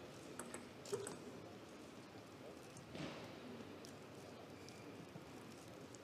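Faint hall background between table tennis points, with a few light taps in the first second and a soft rustle about three seconds in.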